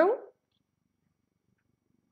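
A woman's voice drawing out the last word of "there we go" with a pitch that glides up, ending a fraction of a second in, then near silence.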